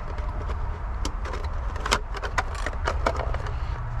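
Scattered light clicks and taps of a plastic RC car body shell being pressed onto a Traxxas Bandit VXL chassis by hand, over a steady low background rumble.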